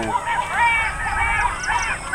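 A flock of birds calling over one another: many short, overlapping calls that rise and fall in pitch.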